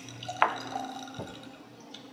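Whiskey trickling from a bottle into a small tulip-shaped tasting glass, with a single sharp click about half a second in.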